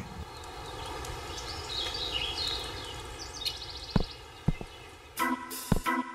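Outdoor village ambience used as a cartoon's sound bed: a steady background hush with a bird trilling in quick chirps, then a couple of light taps, and a rhythmic music track starting about five seconds in.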